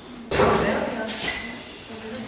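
A sudden thump about a third of a second in, with a short echo, over people talking in a large room.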